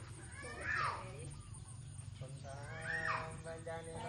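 Two short high animal cries that rise and fall in pitch, about a second in and again near the end. About two and a half seconds in, Buddhist monks begin chanting a blessing in unison on a steady, held pitch.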